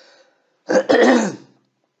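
A man clearing his throat once, a short harsh burst of about a second near the middle, in a small room.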